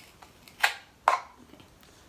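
Paper cup being pierced near its rim with a pencil-like pointed tool: two short, sharp crackles about half a second apart as the paper gives way.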